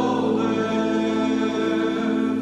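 A man singing one long held note in a slow worship song, accompanied by sustained chords on a Roland electronic keyboard.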